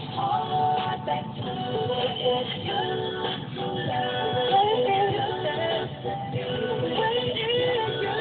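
Music with a sung vocal melody playing on a car stereo, heard inside the car's cabin.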